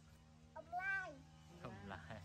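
A baby monkey's high-pitched call, a single cry that rises and then falls over about half a second, starting about half a second in.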